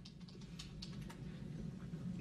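Faint, irregular light clicks, several a second, over a steady low hum from the courtroom audio feed.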